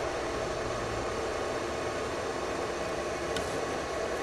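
Steady background noise, an even hum and hiss, with a faint tick about three and a half seconds in.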